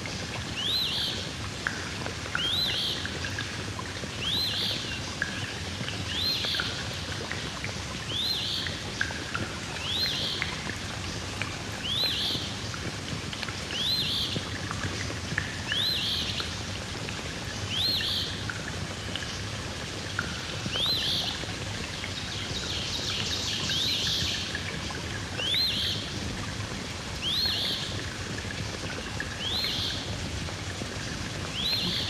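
Field-recorded soundscape: a short, high, rising chirp repeats about once a second over a steady low hum and outdoor background noise.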